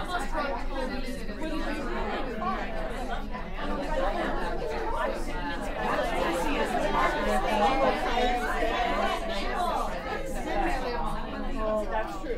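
Many women talking at once in a large room: a steady babble of overlapping conversation.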